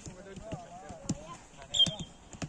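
Footballs being kicked on a grass pitch: several dull thuds spread through the moment, among players' voices. Near the end comes a short high-pitched sound with a thud, the loudest thing here.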